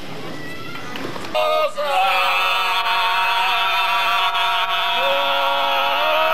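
Murmur of a street crowd, then about a second and a half in a group of voices abruptly starts singing a cappella, holding long sustained notes that change only slowly.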